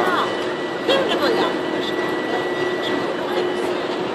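Steady hum and rush of a stationary electric regional train at the platform, with a faint high whine held throughout. Voices break in briefly near the start and about a second in.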